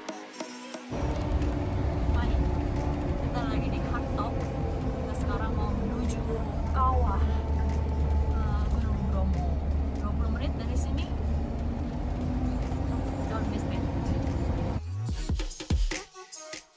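Steady low engine and road drone inside a jeep's cabin while it drives, with people talking over it. It cuts in about a second in and cuts off shortly before the end.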